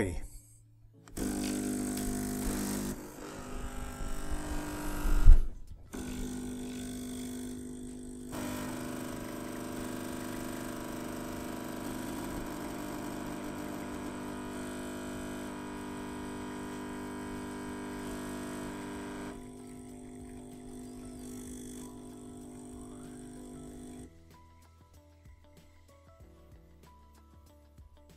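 Two home espresso machines' pumps buzzing steadily as they pull espresso shots. One starts about a second in, with a single loud thump around five seconds, and the second joins at about eight seconds. One stops a little after nineteen seconds and the other near the end.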